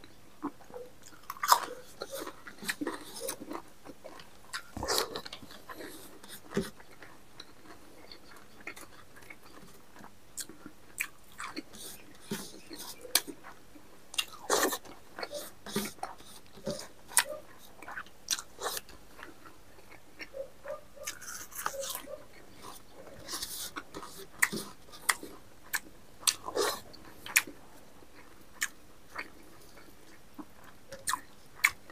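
Close-miked mukbang eating sounds: a man chewing and biting on a mouthful of rice and spicy porcupine meat eaten by hand, with irregular wet smacks and crunches, the loudest about one and a half seconds in.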